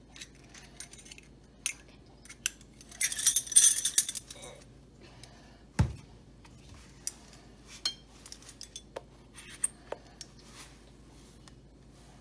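Set of metal measuring spoons clinking and jangling as they are handled, with a denser rattling burst about three seconds in, a single sharp knock near the middle, then scattered light clicks and taps.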